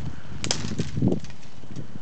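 Dry twigs and brush crackling and snapping as someone moves through them, with a sharp crack about half a second in and smaller crackles a moment later.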